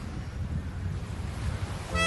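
Outdoor wind buffeting the microphone over a steady wash of surf. A horn-like musical note cuts in right at the end.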